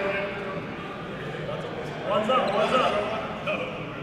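Overlapping voices of a group of men chatting and calling out, with no single clear speaker; the voices get louder about two seconds in.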